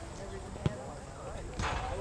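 A soccer ball being kicked: one sharp thud about two-thirds of a second in, with a short rush of noise near the end.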